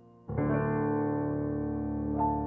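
Yamaha CLP745 digital piano playing its Bösendorfer concert grand piano voice. A held chord fades out, then about a third of a second in a full, loud chord with a deep bass is struck and left ringing, slowly dying away.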